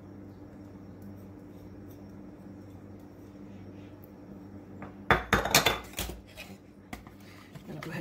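Kitchen utensils clattering against a plastic mixing bowl: a quick run of irregular clinks and knocks lasting about two seconds, starting about five seconds in, as the whisk goes into the batter. Before it, only a low steady hum.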